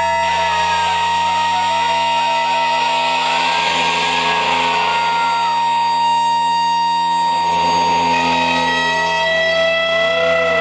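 Free-improvised noise music from electronics and a saxophone: a dense, loud mass of steady held tones and slowly gliding pitches over a constant low hum. A long high held tone cuts off about nine seconds in.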